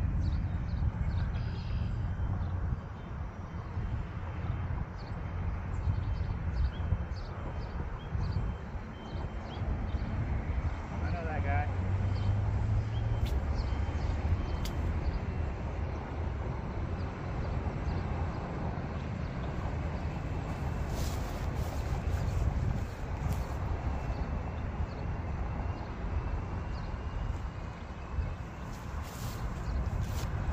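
Wind buffeting the microphone: a steady low rumble with a hiss above it.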